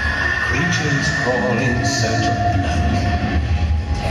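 Dark ambient interlude over a concert PA: a long held high tone over a deep low rumble, with a second, lower held tone coming in about a second and a half in.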